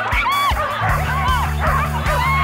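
Dogs barking excitedly in a string of short, high barks at a flyball race, with background music whose steady low notes come in about a second in.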